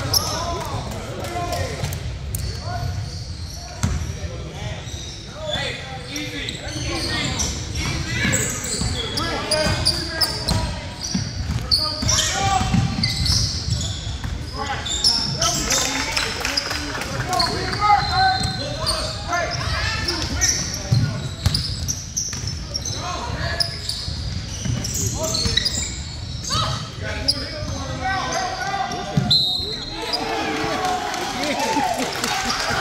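Basketball game sounds in a gymnasium: a basketball bouncing on the hardwood court amid the indistinct voices of players and spectators.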